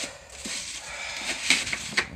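Rummaging in a cabinet: paper rustling, with a few small knocks and clicks from items being moved on the shelves.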